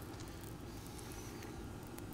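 Bacon grease melting on a hot round steel griddle, giving a faint, steady sizzle with light crackling.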